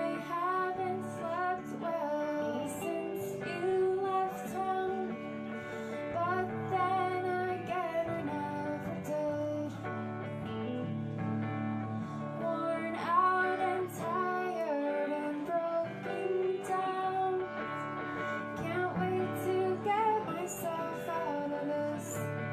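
A woman singing a song live over two electric guitars, one of them a hollow-body.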